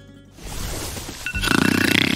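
A person snoring in a loud, pulsing way, while a phone alarm sounds a steady high tone starting just over a second in. Background music plays underneath.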